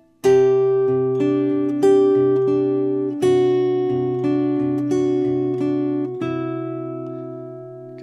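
Acoustic guitar, capoed at the seventh fret, fingerpicked in a slow Travis pattern. The thumb plays bass notes under index- and middle-finger notes, and the ring finger adds a melody note on the G string. Each plucked note rings on and slowly fades.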